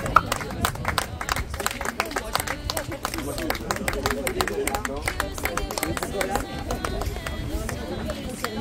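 A small group applauding, with irregular clapping throughout and voices talking over it. Wind rumbles on the microphone underneath.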